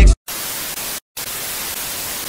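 Television static sound effect: an even hiss that drops out for a moment just after the start and again about a second in. It opens on a short low thump as the music before it cuts off.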